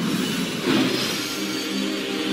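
Logo-reveal sound effect: a loud whoosh that swells again just under a second in, followed by sustained held music tones coming in.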